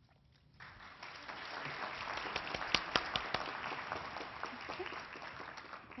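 Audience applauding: it starts about half a second in, builds over the next second, then tapers off near the end.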